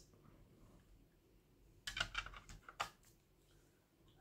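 Hard plastic graded-card slabs being handled: a quick cluster of sharp clicks about two seconds in, lasting about a second, over faint room noise.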